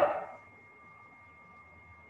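The tail of a woman's word fades out, then low, steady background noise with a faint high hum from the microphone line.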